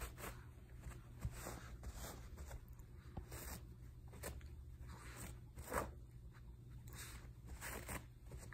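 A Shih Tzu tearing and shaking white paper with her mouth: a string of short, irregular rips, the loudest about six seconds in.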